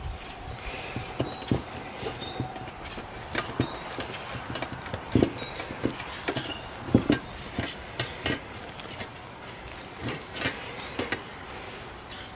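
A knotted cotton bandana bundle being untied and opened by hand: cloth rustling with scattered light knocks and clicks as the packed contents shift, a tin can among them.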